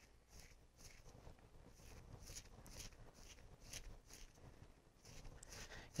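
Faint scratchy strokes of a small Scotch-Brite pad scrubbed around the bead of a rubber 1/8-scale RC buggy tire, a couple of strokes a second, roughing up the bead so the glue will grip.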